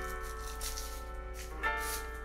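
Piano music playing in the background: held chords, with a new chord struck near the end.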